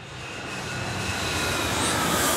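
Rushing engine noise like a passing jet aircraft, which fades in and grows steadily louder.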